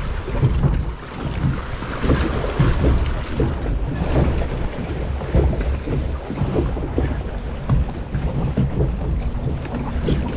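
Reverchon log flume boat floating along its water channel: steady rushing and sloshing of water around the hull, with wind buffeting the microphone and irregular small knocks throughout.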